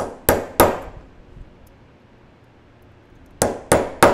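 Hammer striking a steel rivet set to flare a semi-tubular rivet on a steel bench block: three quick metallic blows, a pause of nearly three seconds, then three more.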